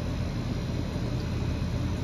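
Steady low hum and whir of outdoor air-conditioner condenser units running.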